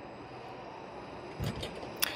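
Quiet, steady background noise, with a single soft, low thump about one and a half seconds in.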